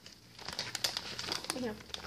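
Wrapped candy crinkling and rattling as a hand rummages through a plastic candy bucket, with quick irregular crackles from about half a second in.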